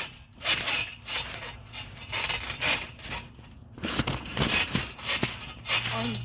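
Child bouncing on a trampoline: a rhythmic series of short rustling, scraping bursts from the mat and springs, about one every half second to second.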